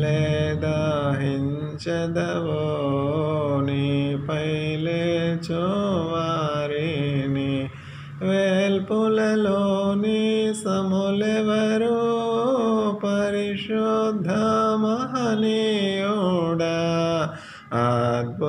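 A single voice singing a slow devotional song in a chant-like style, with long, ornamented, wavering notes. It breaks briefly about eight seconds in and again near the end.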